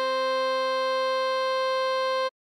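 Synthesized music holding one steady chord: the alto sax melody's written A5, which sounds as concert C, sustained over a C minor chord. It is the closing note of the piece and does not change in pitch or level.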